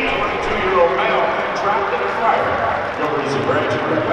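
Stadium crowd chatter: many voices talking at once, none of them clear.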